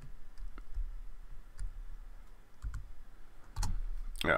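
A few scattered light clicks from handling at a computer desk, over a low rumble, with a louder click near the end.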